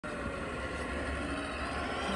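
An off-road vehicle's motor running steadily, a low even hum, as it crawls slowly over snow-covered rocks.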